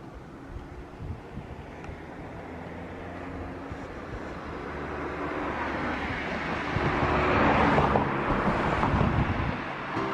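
A road vehicle passing close by: its noise builds steadily over several seconds, is loudest about three-quarters of the way in, then falls away just before the end. There is some wind rumble on the microphone.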